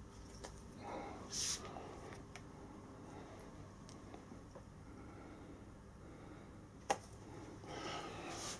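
Mostly faint room sound while a torsion-spring hand gripper is squeezed shut. A short hissing breath comes about a second and a half in, and a single sharp click comes about a second before the end.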